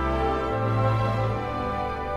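Symphony orchestra playing a slow funeral-march movement in B minor, with held chords over low bass notes that change about half a second in.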